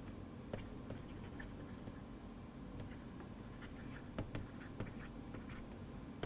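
Stylus writing on a tablet screen: faint, irregular taps and light scratches of the pen tip as words are handwritten, over a low steady background hum.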